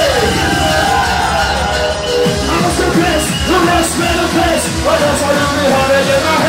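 Loud hardcore rave dance music played through a club sound system: a steady bass beat under a pitched melody that shifts and glides.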